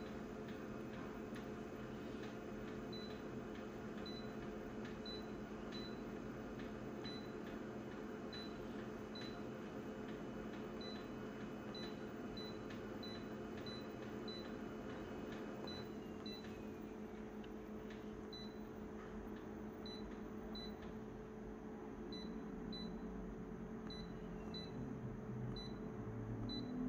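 Short high beeps from an office copier's touchscreen control panel, one for each tap on a menu button, coming at irregular intervals over a steady low hum.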